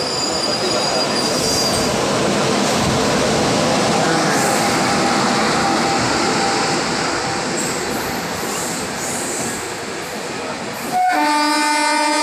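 Passenger train hauled by an electric locomotive rolling past on the far track: a steady rumble of wheels on rails with a faint squeal of the wheels. About a second before the end, the rail noise cuts off abruptly and a steady pitched sound with overtones takes over.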